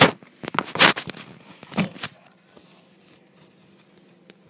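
Handling noise from a phone being moved about: its microphone rubbing and knocking against clothing in a quick run of sharp rustles and scrapes, loudest at the very start and dying away after about two seconds.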